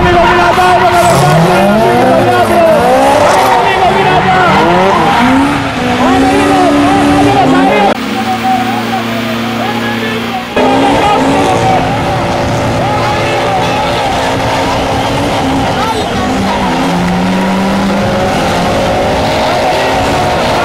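Several drift cars' engines revving hard, their pitch swooping up and down over and over, amid tyre squeal as the cars slide. The sound changes abruptly about eight seconds in and again a couple of seconds later.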